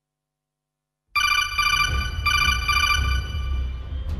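Electronic ringing call tone that starts suddenly about a second in and rings in two bursts over a steady low drone, from a pre-recorded performance soundtrack played through the hall's speakers.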